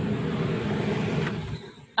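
Loud, steady rumbling noise, obnoxiously loud, that fades and cuts out about one and a half seconds in.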